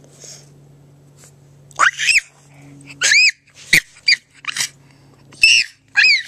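A dog whining: about five short, high-pitched whimpers that rise and fall in pitch.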